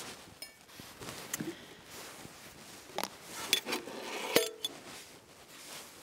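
Camping gear being handled and rummaged through: soft rustling with scattered light clicks and clinks, several sharper ones in the middle.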